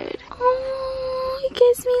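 A woman's voice holding one long, steady-pitched wordless vocal sound, then a shorter one near the end.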